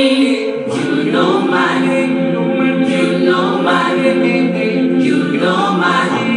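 Mixed choir singing gospel a cappella in close harmony, holding sustained chords that change about once a second.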